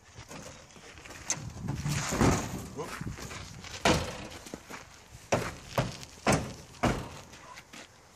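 The rusted rear door of a wrecked Ford Falcon sedan being swung and banged against the body, giving a string of about six sharp metal knocks and slams under a second apart in the second half. Laughter and voices are mixed in.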